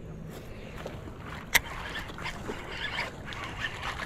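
Water splashing at the surface as a hooked bonito thrashes close to shore. There is a single sharp click about one and a half seconds in.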